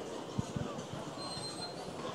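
Steady background noise of a large church hall, with a few soft low thumps and a faint thin high tone in the second half.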